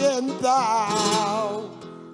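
Flamenco cante: a singer's long, wavering, ornamented vocal line over plucked flamenco guitar. The voice trails off near the end while the guitar keeps sounding.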